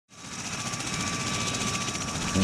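MV-22B Osprey tiltrotor running on the ground with its proprotors turning: a rapid, even pulsing with a thin steady whine above it, fading in over the first half second.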